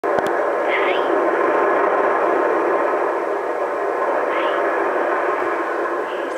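Loud, steady hiss, with two short, high squeaks from a four-month-old baby, about a second in and again a little past four seconds.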